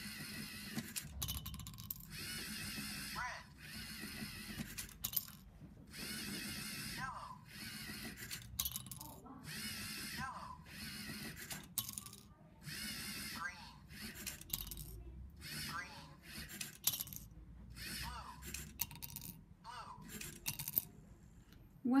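LEGO Mindstorms EV3 colour sorter running: its electric motors whir in repeated bursts of a second or so as the conveyor carries each brick along, with sharp clicks as plastic bricks drop into glass tumblers.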